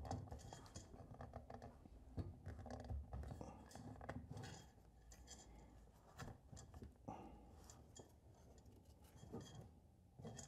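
Faint scratching and light clicks of lamp wire being fed by hand through the lamp's switch housing, scattered irregularly.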